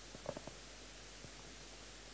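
A few soft knocks of a handheld microphone being handled over faint steady hiss: a quick cluster of about three near the start and one more a little past a second in.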